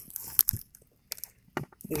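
A few faint, brief clicks and handling noises scattered through a quiet stretch, with a spoken word starting at the very end.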